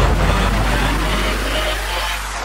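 Electronic dance music break: a dense, hissing synth noise wash held over a steady deep bass note, with no beat, slowly fading.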